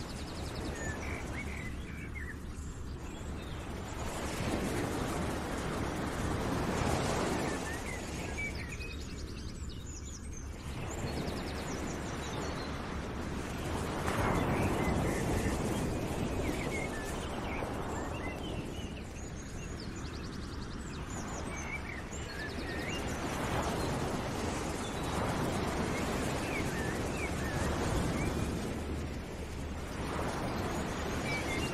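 A background ambience track of rushing noise that swells and ebbs every few seconds, with scattered short bird chirps over it.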